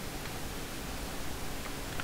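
Steady hiss with a faint low hum, and a few faint, scattered keystrokes on a computer keyboard.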